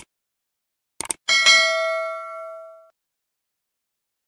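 Sound effect for a subscribe-button animation: quick mouse-click sounds about a second in, then a bright notification-bell ding that rings for about a second and a half and fades away.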